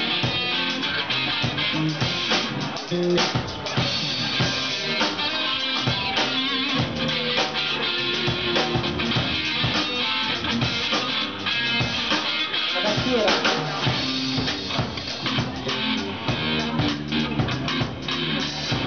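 A rock band playing live: electric guitar and bass over a drum kit, dense and continuous.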